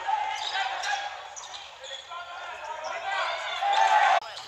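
Live basketball game in a large, echoing gymnasium: the ball bouncing on the hardwood court under a steady din of crowd voices, swelling loudest near the end.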